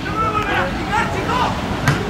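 Raised voices calling out on and around a football pitch during play. A single sharp thud near the end is the ball being struck in a shot at goal.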